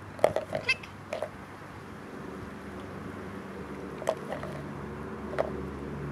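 Plastic toys clacking as a small dog drops a plastic toy shovel into a plastic sand bucket: a few sharp clacks, two of them near the end, over a low hum that grows steadily louder.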